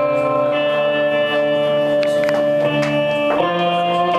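Electric guitar playing a slow instrumental intro of held, ringing chords, the chord changing about half a second in and again near the end.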